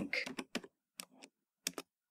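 Computer keyboard keystrokes: about eight separate key clicks at an uneven pace as a short command is typed and entered.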